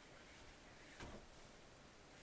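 Near silence: room tone, with one faint, brief sound about a second in.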